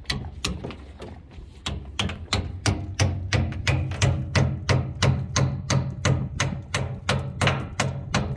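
Claw hammer tapping wooden wedges under a teak caprail in a steady run of sharp knocks, about three a second, driving the wedges in to pry the rail up off the deck.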